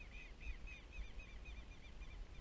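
A bird calling in a fast series of short, arched chirps, about six or seven a second, fading out about a second and a half in, over a low rumble.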